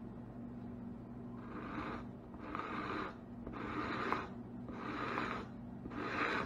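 A blade scraping leftover tissue off a dried snakeskin, in about five even strokes roughly a second apart, starting a little over a second in.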